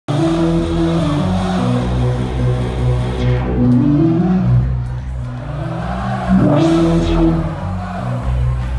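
Heavy dubstep played loud through a club sound system: deep bass with growling synth bass lines that step up and down in pitch. The treble drops out about three seconds in and sweeps back up shortly before the end.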